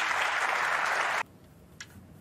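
Arena audience applauding, cut off abruptly about a second in; a faint click follows near the end.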